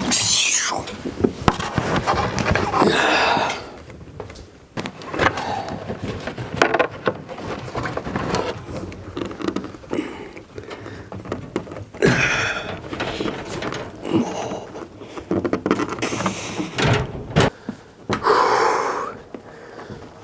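A man grunting and breathing hard with strain, over and over, as he lifts and holds a heavy wall-mount tankless water heater in place. Scattered knocks and bumps from the unit being handled against the wall.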